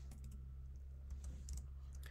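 Computer keyboard keystrokes as code is edited: a few scattered key taps, most of them between about a second and a second and a half in, over a steady low hum.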